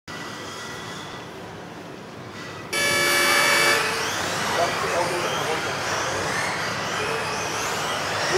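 A single loud electronic start tone sounds for about a second, about three seconds in. After it the motors of electric RC offroad cars whine, wavering in pitch as the cars accelerate and race around the hall.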